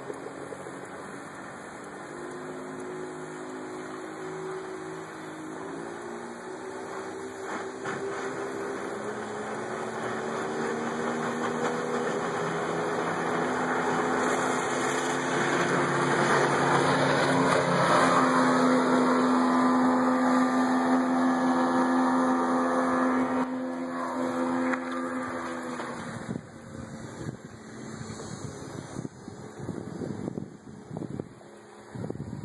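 A 40-horsepower outboard motor drives a 20-foot Carolina dory at speed. Its engine note steps up in pitch in the first few seconds, grows louder as the boat comes in close and turns, then fades away over the last few seconds.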